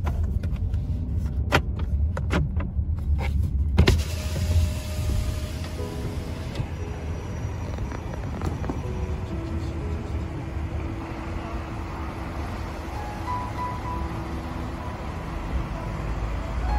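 Low rumble of a car driving slowly, heard from inside the cabin, with a few sharp clicks in the first few seconds. About four seconds in a steady hiss sets in, and soft music plays underneath.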